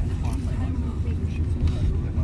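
Steady low rumble of a car's engine and road noise heard inside the cabin while driving, with faint voices of passengers under it.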